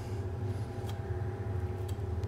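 A chef's knife tip scraping and clicking faintly as it works raw quail flesh off the bone, over a steady low hum.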